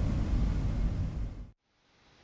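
Steady low rumble and hiss of studio room tone through the microphone, cutting off abruptly to dead silence about one and a half seconds in at an edit.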